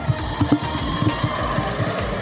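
Background music with a run of short low knocks and rumble from a handheld camera and microphone being swung about.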